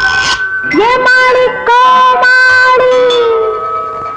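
A woman singing long held notes in a 1970s Tamil film song, each note starting with a quick upward slide, with short breaks between phrases.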